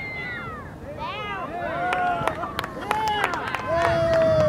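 Several high-pitched voices shouting drawn-out, rising-and-falling calls across a soccer pitch, growing louder, with a long held shout near the end and a few sharp claps in between.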